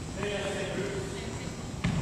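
A basketball bouncing once on a hardwood gym floor near the end, a single sharp thump. Before it, voices call out across the gym.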